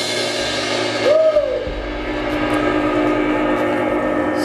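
Drum kit cymbals ringing out after a final crash, the wash fading over about the first second while lower tones keep ringing. About a second in there is one short hoot that rises and falls in pitch.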